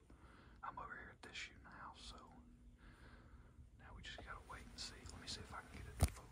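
A person whispering quietly, on and off, with a faint hum partway through.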